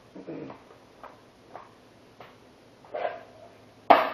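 Scattered light knocks and clicks of tools being handled, ending in a sharp metal clank as the floor jack and its wheeled stand are set up against the underside of the Jeep's door.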